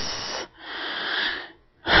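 A person breathing audibly between phrases. A breathy trail at the start is followed by a noisy breath of about a second, and a fresh breath comes just before speech resumes near the end.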